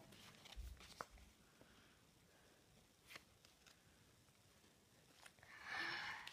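Near silence with a few faint ticks and rustles of paper stickers being shuffled in the hands, and a soft rustle near the end.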